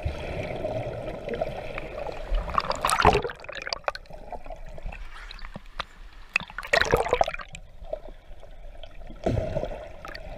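Sea water sloshing and splashing around a camera held at the surface of the water, with louder bursts of splashing about three seconds in, around seven seconds in, and again near the end.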